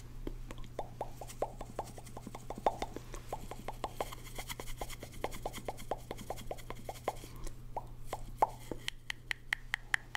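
Rapid wet mouth pops and clicks made through a cardboard tube, about five a second, each with a hollow ring from the tube. They go briefly quiet near the end, then resume.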